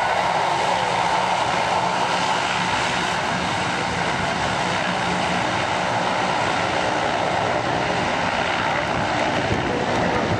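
Lockheed C-130 Hercules' four Allison T56 turboprop engines running as the aircraft rolls along the runway. It is a loud, steady propeller and turbine drone, with a low hum that fades about halfway through.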